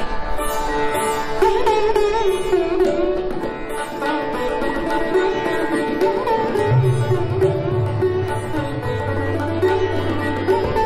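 Sitar playing Raga Yaman, its notes bent in wavering glides about one and a half seconds in, with tabla accompaniment. A deep, resonant bass tone from the tabla's bayan drum enters about two-thirds of the way through and carries on.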